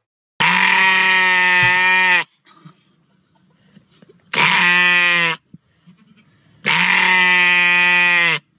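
A sheep bleating three times, close and loud: two long, steady calls of nearly two seconds each, with a shorter one between them.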